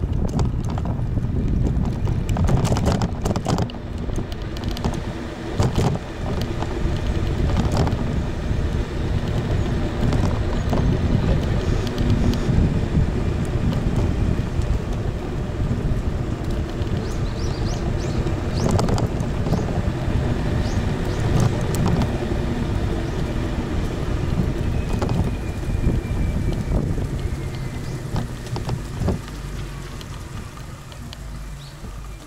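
Wind buffeting the microphone of a camera mounted on a moving electric kick scooter, over road rumble from its tyres on asphalt, with scattered short knocks. The noise eases off over the last few seconds as the scooter slows.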